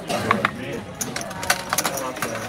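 Clay casino chips clicking and clacking on a gaming table as bets are handled, several sharp clacks over background voices.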